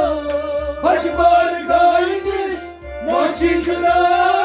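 Male voice singing a Sufi kalam in long, bending melodic phrases, one starting about a second in and another near three seconds in, over rhythmic hand-drum strokes.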